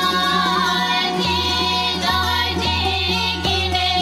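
Pirin folk song sung by a group of voices, accompanied by strummed Bulgarian tamburas.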